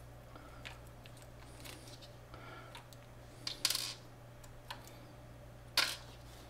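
Small clicks and snips of plastic 3D-printer extruder parts being worked with flush-cutting clippers as the drive gear is freed from the housing, with a short louder rasp a bit past halfway and a sharp click near the end.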